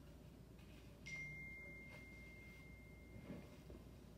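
A single high electronic ding, a phone notification tone, sounding about a second in and fading away over about two seconds against near silence.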